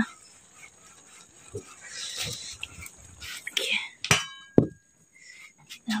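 Steel cookware being handled and set down: scattered knocks, with a brief metallic ring about four seconds in.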